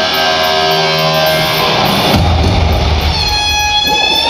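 Electric guitar solo played live through an arena PA, with held, sustained notes. A heavier low passage comes in about two seconds in, and a high sustained note rings out near the end.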